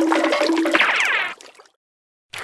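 Gurgling, flush-like water sound effect with a falling sweep about three-quarters of a second in; it fades out at about a second and a half.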